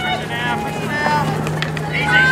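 High-pitched voices calling out across a hockey field, over a steady low hum.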